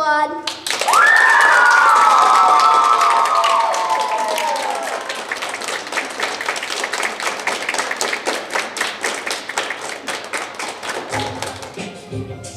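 A group of children's voices lets out a long high 'whoo' that slides slowly down in pitch over about four seconds, over steady dense clapping that carries on and thins out toward the end.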